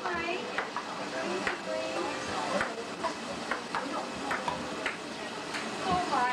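Table-tennis rally: a plastic ball clicking off paddles and the table, a light click every half second or so, over party chatter and music.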